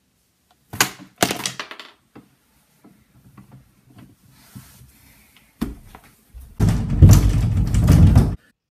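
Knocks and thuds against wooden closet doors in a small room: a cluster of sharp knocks about a second in, a single thud later, then a loud, rough stretch of noise for the last second and a half.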